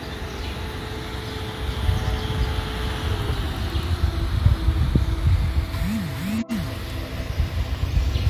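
Outdoor low rumble of wind on a phone microphone, with a faint steady hum that drops slightly in pitch about three seconds in. The sound cuts out for an instant about six and a half seconds in.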